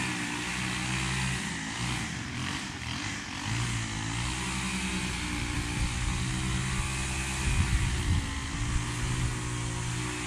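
Walk-behind push mower engine running steadily while mowing, its pitch dipping and recovering a few times as it takes load in the grass.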